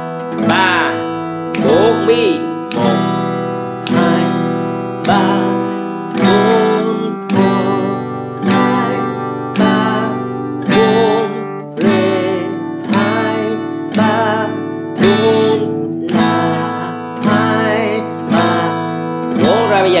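Steel-string acoustic guitar strummed with single downstrokes of the index fingernail, about one a second, each chord ringing on until the next stroke. The chord changes every four strums, cycling through A (played as Asus2), E minor, G and D.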